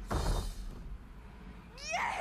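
Animated film trailer soundtrack: a short puff sound effect just after the start, then near the end a high cartoon squeal that rises steeply in pitch.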